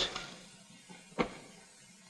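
Low, steady hiss of an old film soundtrack, with one sharp click about a second in.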